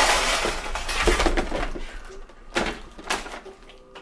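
Rustling and clatter as network cables and plastic camera hardware are handled on top of a NAS. It is loudest in the first two seconds, with two short bursts near the end.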